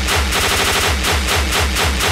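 A rapid, evenly paced run of sharp bangs, about eight a second, over a heavy low thump about four times a second. It sounds like machine-gun fire, but it may be a fast electronic beat.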